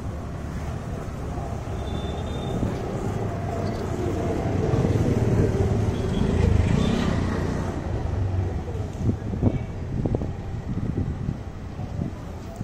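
Street traffic: a motor vehicle's engine running close by, growing louder toward the middle and then easing off, over a steady low rumble of traffic.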